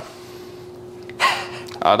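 Quiet room tone with a faint steady hum, then a man's sharp intake of breath a little past a second in, just before he resumes speaking.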